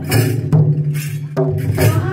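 Live Adivasi folk music: a barrel drum struck in rhythm, a few sharp strokes over a steady low sustained tone, between sung lines.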